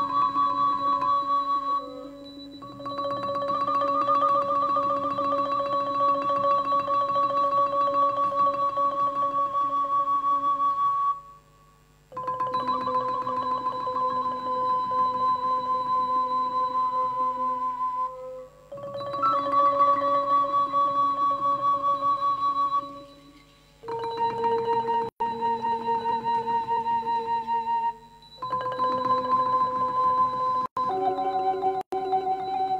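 Thai classical ensemble music: a fast tremolo from a ranat (Thai wooden xylophone) under long-held, slightly wavering melody notes, played in phrases of several seconds broken by brief pauses.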